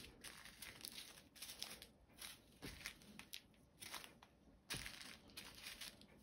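Faint crinkling of small clear plastic zip-lock bags of diamond painting drills being picked up and shuffled on a table, in scattered soft rustles.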